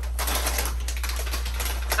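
Plastic chip bag crinkling as it is picked up and handled: a dense run of quick, irregular crackles, over a steady low hum.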